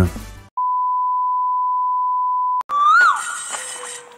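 A steady electronic bleep tone, one pure pitch held for about two seconds and cut off sharply. It is followed by a click and a whistle-like sound effect that slides up and then down in pitch.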